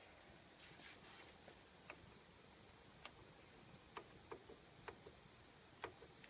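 Faint, irregular clicks of push-buttons on an Allen & Heath Xone:32 DJ mixer being pressed, about seven in six seconds, otherwise near silence.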